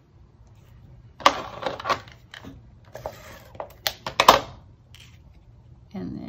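Black satin ribbon being wrapped around a cardstock panel and pressed down by hand: short bursts of rustling and a few sharp clicks, the loudest about four seconds in.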